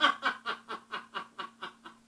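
A man's laugh after a joke: a quick run of short bursts, about five a second, getting fainter and stopping just before the end.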